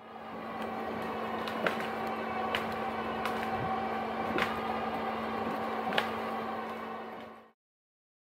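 Electric winch on a Jeep Gladiator's front bumper running steadily as it drags a fallen log off the trail: a constant motor hum with a few sharp clicks. The sound cuts off suddenly near the end.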